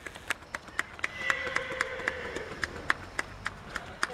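Steady hand-clapping close to the microphone, about four sharp claps a second.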